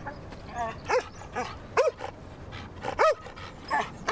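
A dog barking repeatedly, about six short barks at an uneven pace.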